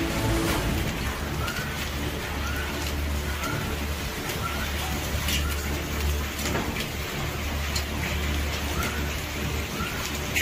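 Storm of heavy rain and hail pouring down: a dense steady hiss over a steady low rumble, with scattered sharp hits from about five seconds in.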